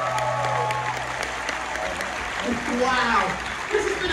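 Audience applauding as the held final notes of the stage music die away about a second in. A voice comes in over the clapping near the end.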